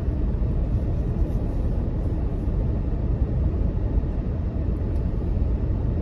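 Steady low rumble of a car being driven, heard from inside the cabin.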